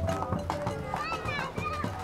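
Children's voices calling out at play over background music, with one longer rising-and-falling shout around the middle.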